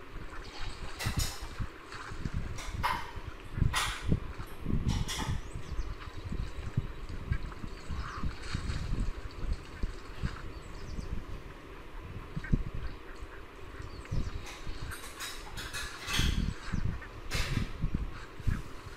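Outdoor background noise of irregular low rumbles, with a handful of sharp clicks scattered through it.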